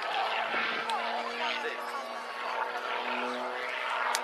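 Distant propeller aerobatic plane's engine drone, its pitch shifting a little and rising about three seconds in, under the chatter of nearby voices.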